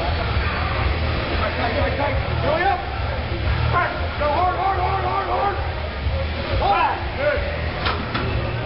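Indistinct voices of several people talking in a large hall, over a steady low rumble.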